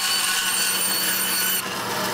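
Band saw cutting through a cardboard tube, a steady noise with a high-pitched ring. Shortly before the end the high cutting note drops away as the blade comes through the tube, leaving the saw running.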